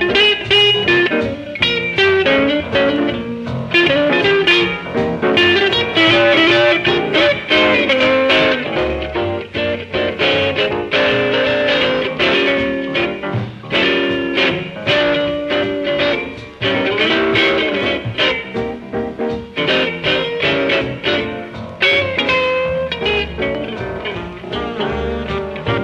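Jump-blues/swing record with an electric tenor guitar playing a lead line over a swinging rhythm section.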